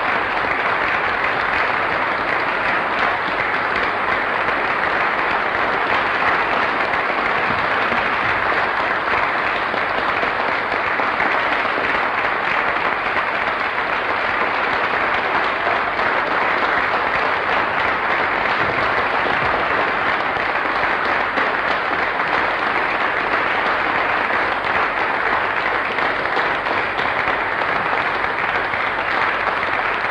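An audience applauding steadily: many hands clapping in a dense, even ovation.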